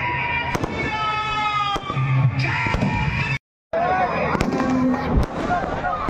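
Fireworks packed into a burning Ravan effigy, going off in scattered sharp cracks and pops over loudspeaker music and crowd voices. The sound drops out completely for a moment just past halfway.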